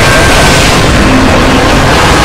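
Many video soundtracks playing over one another at once, blurring into a loud, steady wall of noise with no single sound standing out.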